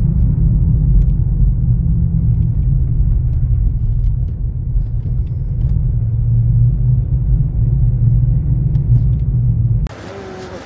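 Steady low rumble of a car driving, heard from inside its cabin on a phone's microphone. It cuts off abruptly just before the end.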